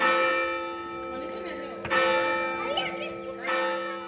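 Large church bell in a stone bell tower struck three times, about one and a half to two seconds apart, each strike ringing on and fading as the next one lands.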